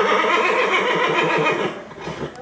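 A horse whinnying: one loud whinny with a quavering pitch, lasting a little under two seconds, that fades out just before the end.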